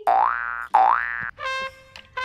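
Two cartoon 'boing' sound effects, each a springy rising glide about half a second long, one straight after the other. They are followed near the end by a short steady musical note.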